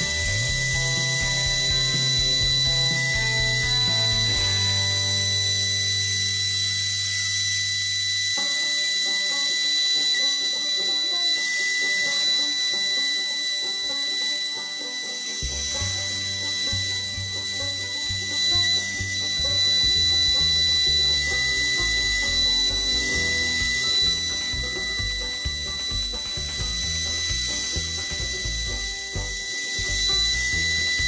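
CNC router spindle running steadily with a high-pitched whine as its end mill cuts plywood, over background music with held low notes.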